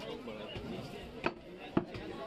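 Heavy butcher's knife chopping beef on a wooden chopping block: two sharp strikes about half a second apart in the second half, with voices faintly in the background.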